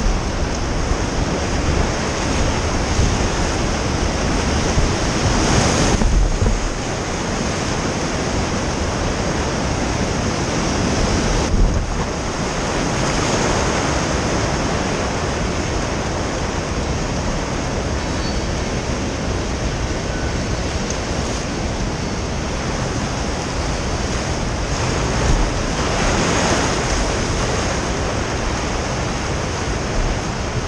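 Whitewater rapids rushing loudly around an inflatable raft, a continuous churning of water mixed with wind buffeting the microphone. The rush swells louder a few times, about six and twelve seconds in and again near the end.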